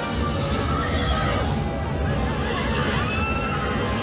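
Horses whinnying several times over the low rumble of galloping hooves from a charge of horse-drawn chariots, with music underneath.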